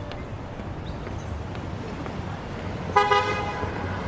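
A single short car-horn toot about three seconds in, over a low steady background rumble.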